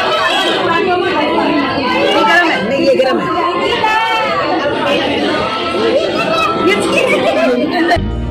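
Many people's voices chattering over one another without a break, echoing in a large indoor hall.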